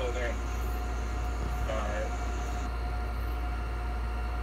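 A steady low hum with a thin constant tone above it, and faint snatches of a voice at the start and around the middle.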